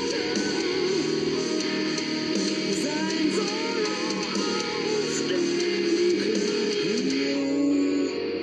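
A German metal song playing: electric guitars with a woman singing, ending on a long held note that slides up.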